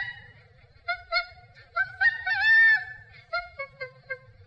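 Chimpanzee vocalizing: two short pitched calls about a second in, then a longer, louder call that rises and falls, then a quick run of short calls near the end.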